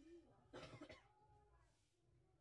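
A person coughing once, faintly, about half a second in, against near silence.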